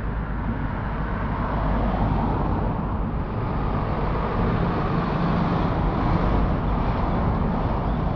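Road traffic passing on a city street: steady tyre and engine noise from cars driving by, swelling slightly in the middle.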